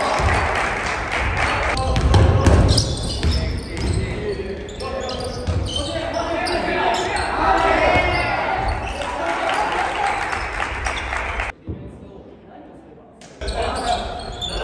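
Live basketball play in a reverberant gym: a ball bouncing on the wooden court, with players' calls and voices echoing in the hall. The sound drops low for about two seconds near the end, then comes back.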